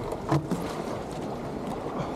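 Water sloshing and splashing against a surf foil board as it is hand-paddled, with a louder splash about a third of a second in.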